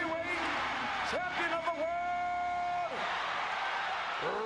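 Boxing-arena crowd noise with men shouting and whooping in celebration in the ring. About a second in, one voice holds a long yell for nearly two seconds.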